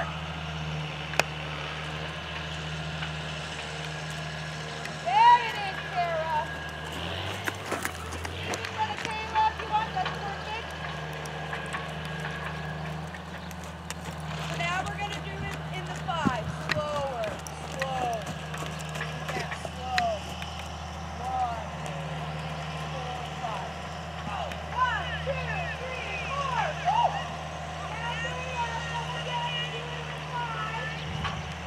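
Faint, indistinct voices at intervals over a steady low hum.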